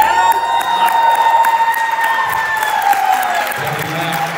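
Audience applause and cheering break out over the waltz music's long final held note, which slides up at the start and fades near the end.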